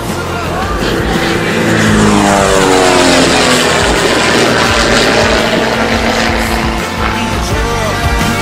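Pitts S-2B aerobatic biplane's six-cylinder Lycoming engine and propeller running at full power as it flies past. The engine note falls sharply about two to three seconds in as the plane goes by.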